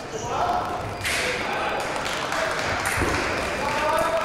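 Sports-hall ambience at a fencing competition: several voices talking at once in the background, with a few short high pings.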